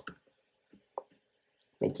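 A few faint, short computer-keyboard clicks in an otherwise quiet pause, the clearest about a second in.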